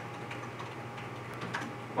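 A few faint, scattered clicks of laptop keys as a password is typed in and the login submitted, over a steady low hum.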